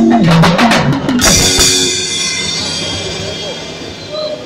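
Live church band ending a song: a few drum-kit strikes with chords in the first second and a half, then a cymbal and the chords ring out and fade away.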